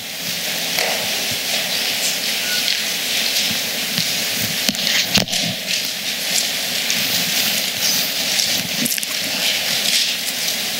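Thin Bible pages being leafed through, a steady rustle of many small crackles with one sharper click about five seconds in.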